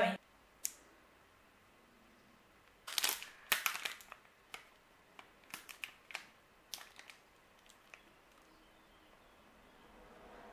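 Plastic wrapper of a protein bar crinkling and crackling as it is peeled open by hand: one sharp click under a second in, then a run of short crinkles between about three and eight seconds in.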